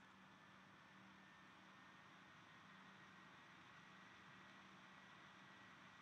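Near silence: room tone of faint steady hiss with a low hum.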